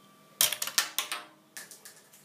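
A quick clatter of hard plastic Lego parts starting about half a second in, a run of sharp clicks with a few lighter ones near the end: a piece knocked loose from the model falling and bouncing on a hard floor.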